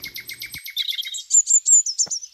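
Birds chirping: a fast, even trill of about ten high pulses a second, then from about a second in a run of louder, higher chirps.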